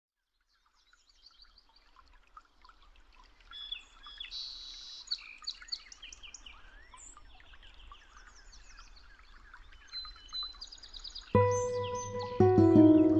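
Small birds chirping and calling in many quick, short notes, starting about a second in, over a faint low background rumble. Near the end a loud, steady musical tone comes in.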